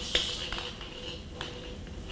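Numbered draw balls clicking against each other and the copper bowl as one is picked out by hand: a few faint, sharp knocks.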